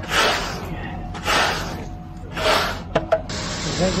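A long metal hand float swept across wet concrete: three scraping strokes about a second apart, then two sharp clicks near the end.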